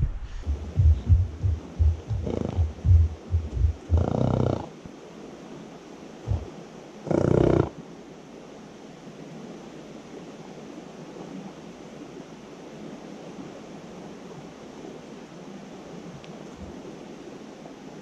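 A horse snorting twice, short noisy blows about four and seven seconds in, with low buffeting on the microphone in the first few seconds and the steady rush of a river running underneath from then on.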